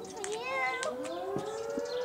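A siren winding up: one long tone rising in pitch over about a second and then holding steady, with a child's short vocal sound over its start.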